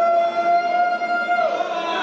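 A man's voice holding one long shouted note that swoops up at the start, holds level, and drops away about a second and a half in.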